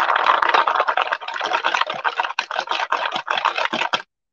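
Wet, paint-coated wooden beads rolling and clicking against each other and the paper bowl as it is swirled: a dense, continuous rattle of small clicks that stops suddenly at the end.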